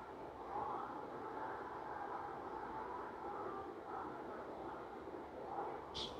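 Faint, steady background noise of a quiet room, with no distinct event.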